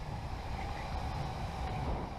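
Onboard sound of an electric go-kart running at speed: a steady low rumble and rushing noise of tyres and air, with no engine note.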